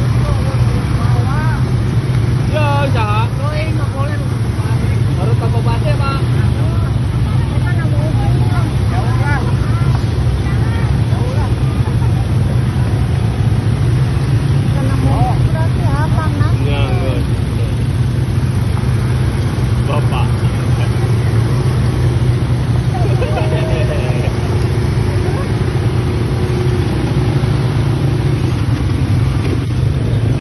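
Many ATV (quad-bike) engines running together as a convoy rolls past slowly, a dense, steady engine drone. People's voices call out now and then over it.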